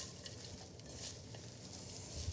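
Faint rustling of fresh celery leaves being handled and dropped into a bowl of shredded red cabbage, with a couple of light ticks.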